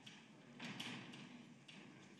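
Near-silent room tone with a few faint taps and a brief soft rustle a little over half a second in.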